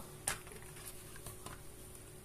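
A single light knock about a quarter second in as the glazed clay baking pot is handled with an oven mitt, then only a faint steady hum.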